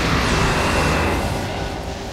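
Trailer sound-design effect: a dense rushing whoosh over a low rumble that eases off over the two seconds.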